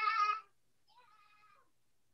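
A toddler's short, high-pitched squeal, then a fainter whiny cry about a second in.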